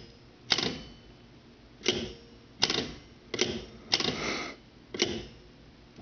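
The switch hook of a 1968 Western Electric 554 rotary wall phone, with its cover off, being pressed down and let up by hand. It makes six sharp metallic clicks, roughly a second apart, as the hook switch opens and closes.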